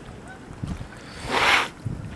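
Wind over choppy lake water and small waves lapping, with a short breathy hiss about one and a half seconds in.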